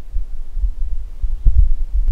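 Low rumble with uneven thuds, two stronger ones about one and a half seconds in.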